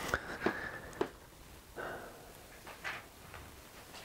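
A few faint clicks and soft rustles of handling noise, with three sharp clicks close together in the first second and quieter scrapes after.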